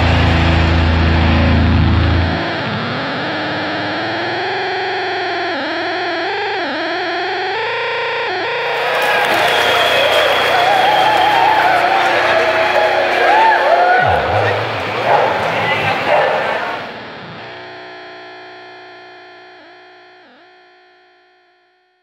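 A live grindcore band's heavy distorted chord cuts off about two seconds in, leaving distorted electric guitar feedback and effects noise ringing with wavering, bending pitch. The noise swells louder for a while, then thins to sustained ringing tones that fade out toward the end.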